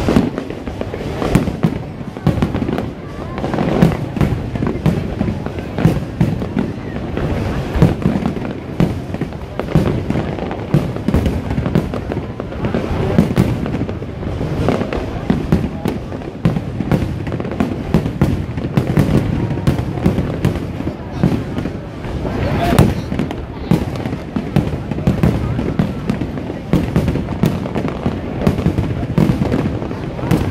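Aerial firework shells bursting overhead in a continuous barrage of irregular bangs, several a second, with crowd voices underneath.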